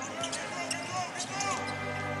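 Basketball dribbled on a hardwood arena court during play, over the steady noise of the crowd in the hall.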